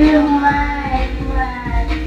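A song: a sung voice holds a long wavering note, then sings a shorter phrase, over backing music with a steady beat.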